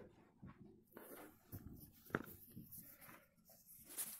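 Near silence with faint rustling from the camera being handled and moved, and one soft click about two seconds in.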